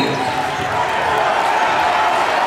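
Steady crowd noise in a gym, with a basketball being dribbled on the hardwood court.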